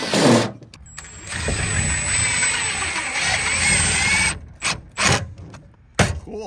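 Cordless drill driving a screw through the back of a metal meter socket cabinet into a PVC backing board: a short burst at the start, then about three seconds of steady running that stops a little after four seconds, followed by two brief knocks.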